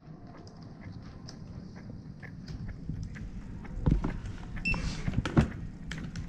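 Scattered clicks of a computer keyboard being typed on, over a steady low hum, with two heavier thumps about four and five and a half seconds in and a short electronic beep just before the second.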